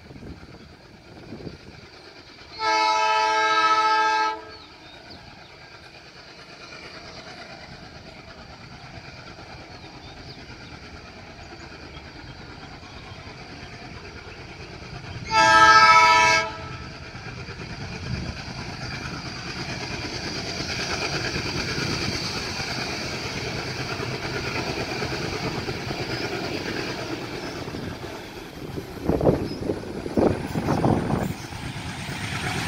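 Indian Railways WDG-3A diesel-electric locomotive sounding its horn twice, two steady blasts of about a second and a half each. After the second blast, the rumble of its engine and the train on the rails grows steadily louder as it approaches, with a couple of low thumps near the end.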